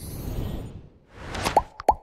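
Animated end-screen sound effects: a whoosh, then a short rising swish, then two quick plops close together near the end, each a brief falling blip.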